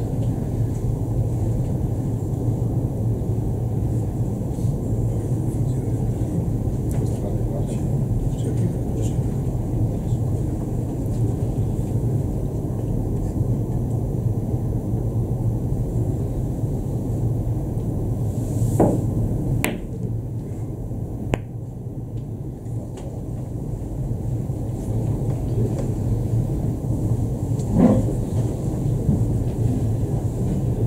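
A steady low hum, with billiard balls thrown by hand clicking sharply against each other twice about two-thirds of the way through, then a fainter click and a duller knock near the end.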